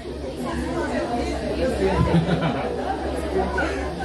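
Several audience members calling out answers at once, a jumble of overlapping voices.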